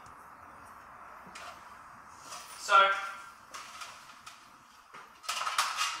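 Metal armour clinking and rattling: the plates of an articulated breastplate and aluminium chainmail jingle in a quick run of sharp clinks near the end as the wearer takes hold of the breastplate. Before that, low room noise and one spoken word.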